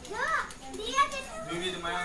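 A child's voice making two short, high-pitched calls that rise and fall, the second louder, about a second in.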